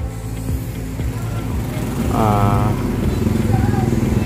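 A motor vehicle engine running with a steady low rumble that slowly grows louder. A brief voice-like call comes a little over two seconds in.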